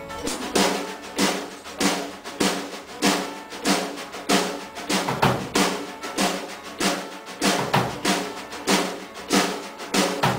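Drum kit played in a steady beat, snare and bass drum hits landing about every 0.6 s with lighter strokes between.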